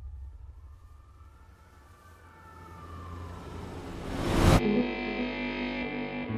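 Trailer sound design: a low rumble of night-time city ambience with a faint siren wailing far off, then a rising whoosh that swells and cuts off suddenly about four and a half seconds in, giving way to a sustained music chord.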